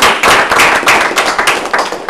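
A small audience applauding loudly, with the separate claps of a few people audible.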